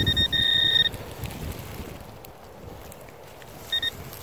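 Metal detector pinpointer probe down in a dig hole sounding its steady high alert tone as it picks up a deep buried target. A short tone runs straight into a longer one, about a second in all, then a brief tone near the end, over faint rustling of dirt and pine needles.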